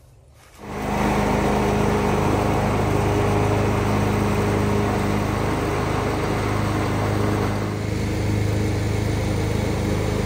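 John Deere 425 garden tractor's liquid-cooled V-twin engine running steadily while mowing with the deck engaged. It starts abruptly about half a second in, and the level dips briefly near eight seconds as the tractor turns.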